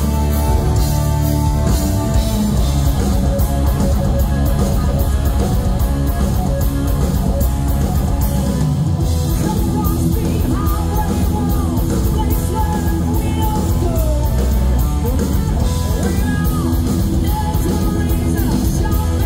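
Live hard rock band playing loud: Flying V electric guitar through Marshall amplifiers over drums, with sung vocals and bending guitar notes.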